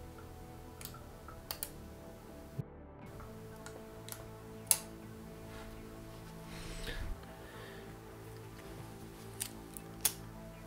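Faint background music with a few scattered light clicks and taps as a tattoo machine with its battery pack is handled and set down on a plastic digital scale; the sharpest click comes about halfway through.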